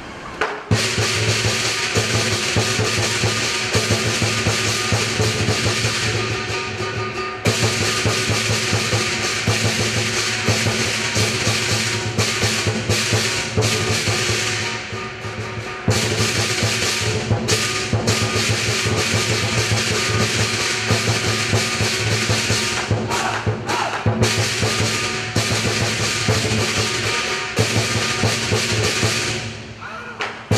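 Southern lion dance percussion: a large lion drum beating steadily with clashing cymbals and a gong, loud and dense. The playing dips briefly about 7 and 15 seconds in and fades just before the end.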